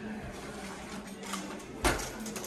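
Apartment door being pushed open, with one sharp knock near the end.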